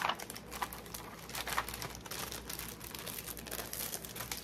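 Packaging and paper crinkling and rustling in the hands, with irregular crackles, as the next iron-on transfer is unwrapped and handled.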